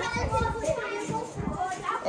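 Children's voices at play: high-pitched child chatter and calls, with some low knocks underneath.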